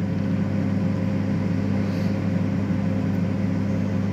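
Microwave oven running at its 500 W setting: a steady, even hum.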